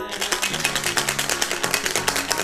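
A fast, even run of sharp clicks, like a rattle or drumroll, over steady background music.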